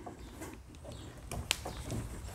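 Faint handling rustle and a few light clicks, one sharper click about one and a half seconds in, as a TH Marine Eliminator prop nut on a trolling motor is twisted loose by hand.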